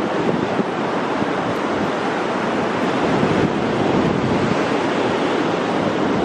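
Ocean surf washing onto a sandy beach, a steady rushing noise.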